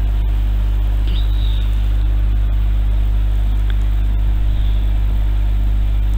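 A steady low hum under constant hiss, unchanging throughout, with no speech.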